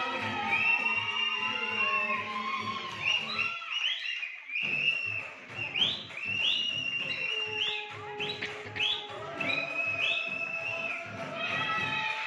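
Background music: a high, gliding whistle-like melody over a steady beat. The beat drops out briefly about four seconds in.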